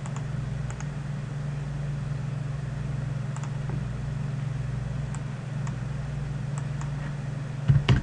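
Faint, scattered clicks of a computer mouse and keyboard over a steady low electrical hum, with a few louder clicks near the end.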